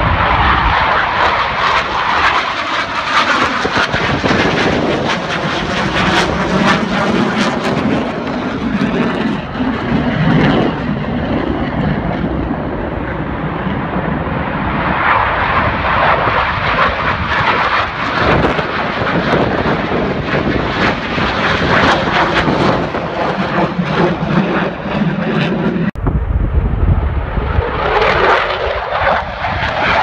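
Eurofighter Typhoon fighter jet's engines running loudly as it flies past, a continuous jet noise that swells and eases as it passes. About 26 seconds in, the sound cuts abruptly to an F-16 fighter jet flying by.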